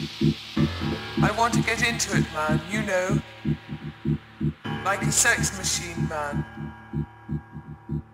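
A house-music DJ mix: a throbbing, bass-heavy four-on-the-floor beat with short gliding vocal or synth phrases over it. The beat thins out in the second half.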